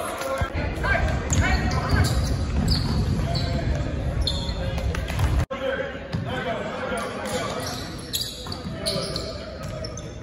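Basketball game in a large gym: the ball bouncing on the hardwood court, echoing, with players and spectators calling out indistinctly. A sudden brief dropout about halfway marks a cut in the recording.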